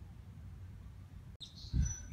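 Garden background with a steady low rumble. The sound drops out briefly about one and a half seconds in. Then come a low thump and a thin, high bird chirp near the end.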